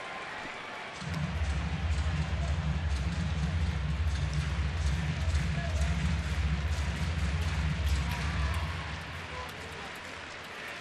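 Ballpark crowd noise. About a second in, a loud, deep pulsing bass from the stadium sound system joins it and fades near the end.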